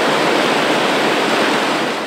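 Water pouring over a concrete weir and churning into white foam below: a steady rush of falling water.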